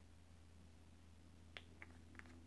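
Near silence: a low steady hum of room tone, with two faint small clicks near the end from a plastic cap being handled on a small bottle of oil.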